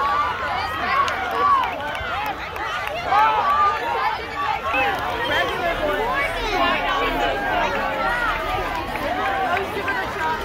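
Crowd babble: many voices talking and calling out at once, overlapping steadily with no single speaker standing out.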